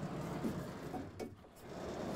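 Sliding chalkboard panels being pushed along their frame: a steady rubbing noise for about a second and a half, a short break, then the rubbing again.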